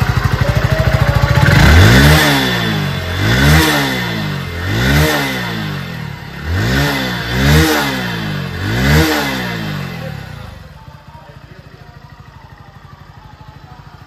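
A Hero Splendor Plus's small single-cylinder four-stroke engine idling, then revved through six quick throttle blips, each a rising then falling pitch, to show off its exhaust note. For the last few seconds it drops back to a much quieter idle.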